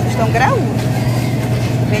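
A steady low hum of supermarket refrigeration runs throughout. A short snatch of a woman's voice comes about half a second in.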